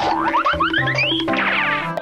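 Playful background music with a cartoon sound effect over it: a quick run of short rising tones, each climbing in pitch and each starting a little higher than the last, from about a third of a second in to just past one second.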